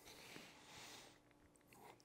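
Near silence: room tone, with faint rustling from accessories being taken out of a padded carry case, about half a second and a second in.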